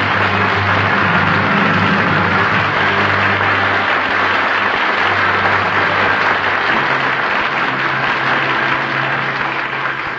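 Studio audience applauding over a musical bridge that plays the show out to its mid-program break, on an old radio transcription with a muffled top end. The applause and music ease slightly near the end.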